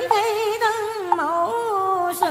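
A voice chanting a verse of Vietnamese Mother Goddess scripture in a slow, melismatic sung style, holding long wavering notes and gliding between them.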